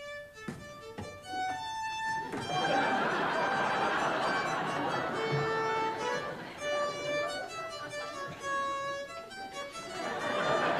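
A violin playing a quick run of separate notes. From about two seconds in, studio audience laughter rises under it.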